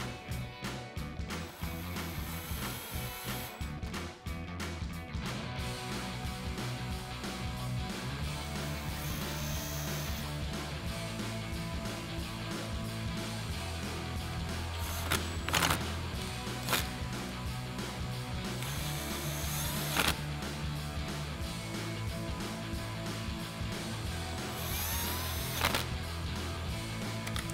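Background music with a steady beat, over several short bursts of a cordless impact driver with a 7 mm socket running screws into a plastic splash guard.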